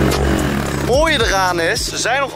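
A Nitro Motors 150cc pitbike's single-cylinder engine running at idle, with a man's voice calling out about a second in.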